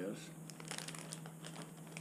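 Plastic zipper-lock bag crinkling faintly as it is handled and moved, with a few small scattered ticks.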